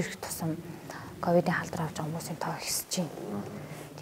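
Speech only: a woman speaking Mongolian in an interview.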